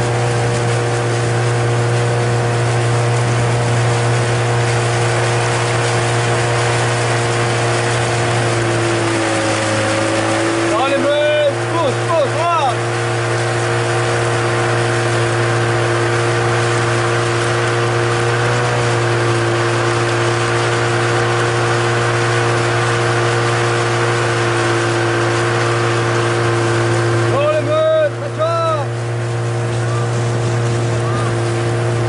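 Small motorboat's outboard engine running steadily, heard from on board, its pitch dipping briefly about nine seconds in. A voice calls out briefly twice, near the middle and near the end.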